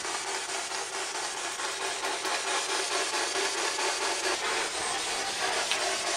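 Spirit box sweeping through radio stations: a steady hiss of radio static, chopped by quick, even steps as the tuner jumps from station to station.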